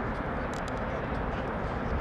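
Steady outdoor background noise: an even, low rumble with no clear single source.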